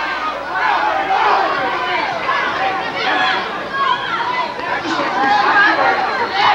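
Boxing arena crowd shouting and chattering at ringside during the fight, many voices overlapping.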